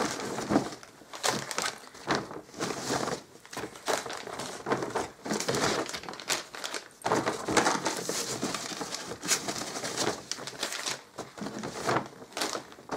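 Plastic packaging crinkling and rustling as it is handled, in irregular bursts.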